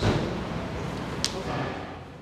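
A single thud-like hit that fades away over about two seconds, with a brief sharp tick about a second in.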